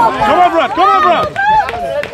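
Footballers shouting to one another during play, several loud calls overlapping and rising and falling in pitch.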